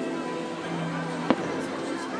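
A single sharp firework bang about two thirds of the way in, over a fireworks-show soundtrack of music with long held notes.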